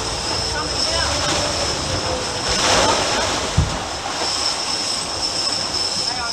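Boat under way: engine hum with wake water rushing past the stern and wind on the microphone, swelling about two and a half seconds in. A single knock about three and a half seconds in.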